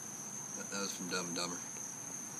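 Crickets trilling steadily, a constant high-pitched note, with a quiet mumbled voice in the middle.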